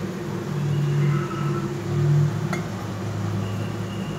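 A steady low mechanical hum with flat tones that come and go, and a single sharp click about two and a half seconds in.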